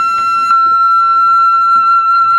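Japanese transverse bamboo kagura flute holding one long, steady high note.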